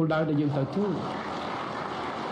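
A man's speech stops less than a second in and gives way to an audience applauding steadily, many hands clapping at once.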